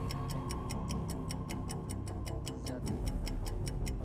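Game-show countdown-timer sound effect: fast, even clock-like ticking, about four ticks a second, over a steady background music bed with a held tone.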